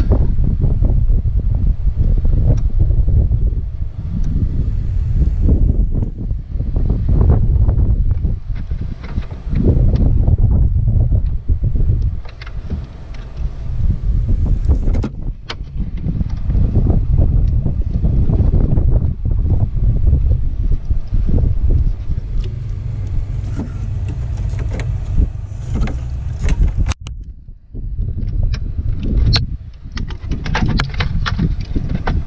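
Low, gusty rumble of wind buffeting the microphone, surging and easing, with small scattered clicks and rustles from hands handling wires and terminal connectors.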